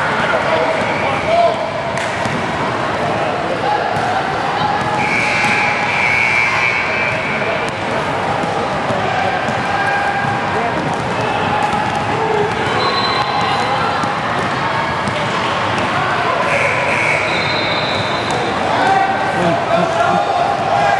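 Basketball being dribbled on a hardwood gym floor during play, with players running and spectators' voices echoing through the hall.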